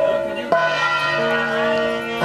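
Puja bells ringing continuously, with a steady, low held note coming in sharply about half a second in.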